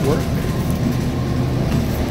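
Steady low rumble and running noise of a moving passenger vehicle, heard from inside the cabin.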